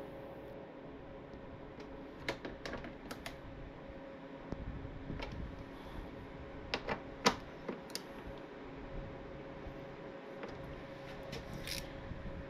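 Scattered sharp clicks and taps from a torque wrench working the fairing screws as they are tightened to 30 inch-pounds, with a steady faint hum underneath.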